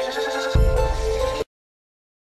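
Background music of held tones over a low rumble that comes in about half a second in, cutting off suddenly about one and a half seconds in, then silence.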